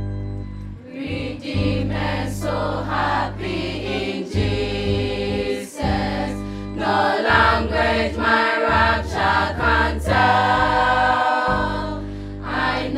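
Children's choir singing a gospel song with electronic keyboard accompaniment. The keyboard's low sustained chords are heard first, and the voices come in about a second in.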